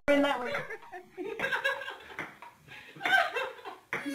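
People laughing and talking in short bursts.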